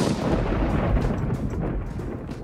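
A clap of thunder: it starts suddenly and rolls on as a low rumble that slowly fades.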